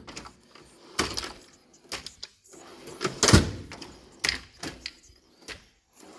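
Drawers of a Mac Tools MB1084DT Tech Series tool chest sliding open and shut on roller-bearing slides, with a series of knocks as they reach their stops; the loudest comes about three seconds in.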